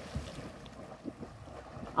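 Faint splashing of a boy swimming hard away through pond water, a steady wash of water noise with a few small splashes.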